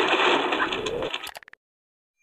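Logo-intro sound effect: a rushing noise with a faint wavering tone underneath, fading out to silence about a second and a half in.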